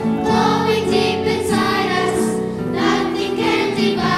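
A choir and congregation singing a theme song together.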